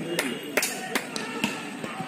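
Spectators clapping in a steady rhythm, about two claps a second, under a faint chant of voices that fades after the start.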